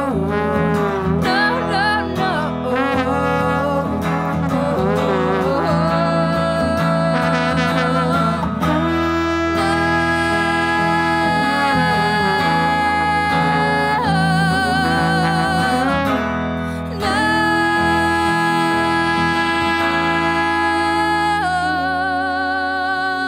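Live song: a woman singing over her hollow-body electric guitar, with a trombone playing alongside. In the second half the voice and horn hold long notes, some with vibrato, with a brief dip just before the last one.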